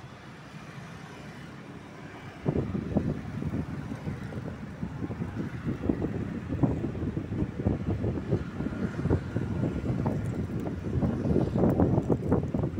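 Wind buffeting the microphone: a soft steady hiss, then from about two and a half seconds in a loud, uneven low rumble that gusts up and down.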